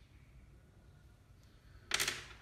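Near silence with a faint low room hum, then, near the end, a short noisy rustle as a hand sets small candies down on a tabletop.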